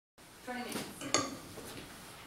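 A short burst of a voice, then one sharp clink with a brief high ringing about a second in.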